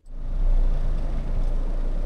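Camper van's engine running, heard from inside the cab: a steady low rumble that cuts in suddenly at the start.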